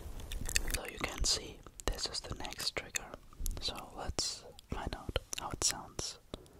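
Close-miked ASMR whispering and mouth sounds: a string of short, breathy, hissing whispers broken up by many sharp mouth clicks.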